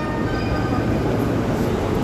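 JR E231-series electric commuter train moving past along a station platform, a steady rumble of its motors and wheels.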